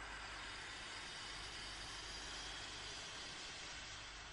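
Steady, even machine-like noise that starts abruptly and fades near the end, with no clear rhythm or pitch.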